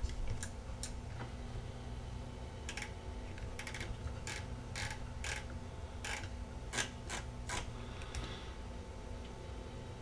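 Irregular clicks of a computer mouse, about a dozen, mostly in the first eight seconds, over a steady low hum.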